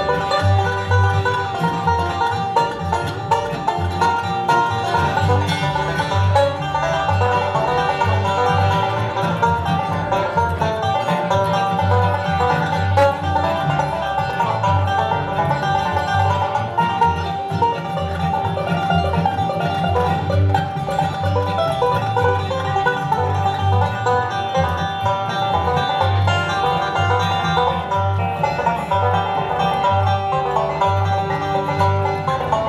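Live bluegrass band playing an instrumental passage with banjo, fiddle, dobro, acoustic guitar and upright bass. The upright bass keeps a steady, regular beat under the plucked and bowed strings.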